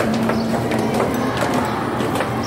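Sharp clicks and knocks at an irregular pace, several a second, over a steady low hum.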